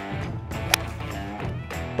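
A golf 1-iron striking the ball off the turf: one sharp crack about three quarters of a second in, over steady background music.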